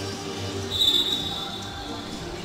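A referee's whistle blown as one long steady note, starting under a second in, signalling the restart of play after a goal.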